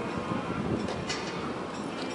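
Steady outdoor background noise with a low murmur of distant voices, broken by two brief sharp clicks a little after the middle.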